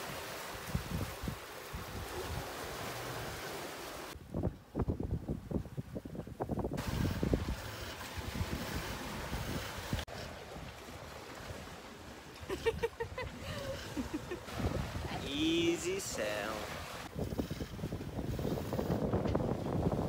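Wind buffeting the microphone and water rushing along a sailboat's hull while it sails in open water. The sound comes in several short clips that change abruptly, with brief voices near the middle.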